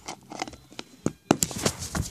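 Handling noise: rubbing and a string of sharp clicks and knocks, most of them in the second half, as things are picked up and moved about.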